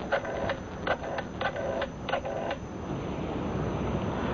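Telephone being dialed as a radio-drama sound effect: a series of short clicks that stops about two and a half seconds in.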